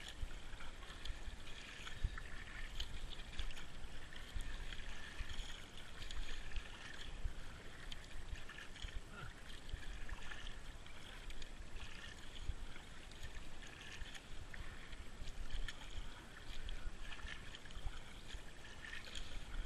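Kayak paddle strokes through calm water: the blades dip and pull with a rhythmic swish and splash, alternating side to side, with drips between strokes.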